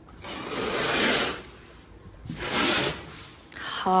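Curtains being drawn open along their rail: two sliding swishes, the first longer, the second shorter about two and a half seconds in. A voice laughs near the end.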